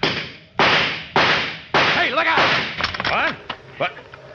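Radio-drama sound effect of a 30-30 rifle firing: four sharp reports about half a second apart, each trailing off, followed by a voice calling out.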